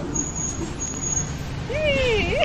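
Steady low rumble of background traffic noise, with two faint thin high beeps in the first second and a half. Near the end a high, sing-song voice starts, its pitch rising and falling.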